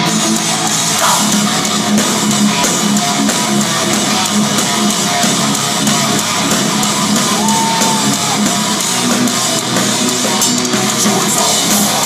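Heavy metal band playing live at full volume: distorted electric guitars and a drum kit.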